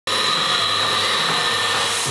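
Electronic dance music from a DJ set, in a stretch without kick drum or bass: a steady hiss with high held synth tones. The pounding beat and bass come in right at the end.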